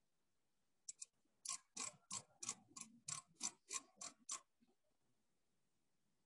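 Outside micrometer's ratchet stop clicking as the thimble is turned to close on a turned workpiece to gauge its diameter. Two clicks about a second in, then a regular run of about nine clicks, roughly three a second, stopping about four and a half seconds in.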